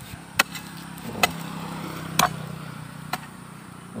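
Steel hoe blade chopping into hard, compacted soil, four strikes about a second apart, the third the loudest. A low steady hum runs under the middle strikes.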